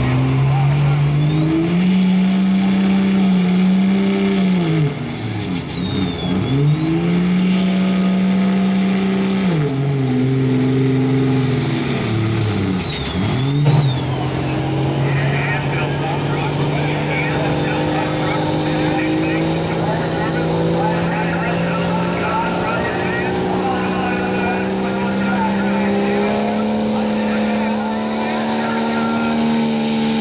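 Diesel pickup engine at full throttle under heavy load, with a high turbo whistle that rises and falls with the revs. The revs sag twice and pick back up. The engine then holds a steady pull, its pitch slowly climbing and the turbo whine rising near the end.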